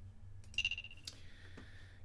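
A short electronic blip from a drum machine pad being auditioned: one steady high beep about half a second long, followed by a single soft click.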